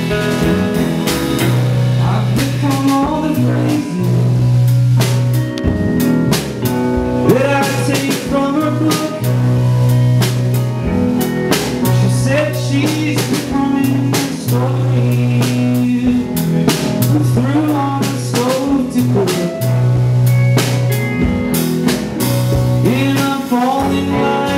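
Live band playing: a drum kit keeps a steady beat under an electric bass holding long low notes, with electric guitar over the top.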